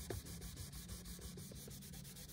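Faint rubbing of a folded paper towel over drawing paper, blending soft 3B graphite shading.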